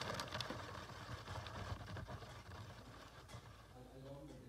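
Beyblade spinning on its worn-flat Nothing tip, a faint whirring hiss with a few light ticks that fades steadily as the top slows.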